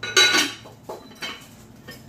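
Glass-ceramic casserole lid clinking against its amber Visions dish as the covered dish is handled. There is one loud, ringing clink near the start, then a couple of fainter clinks.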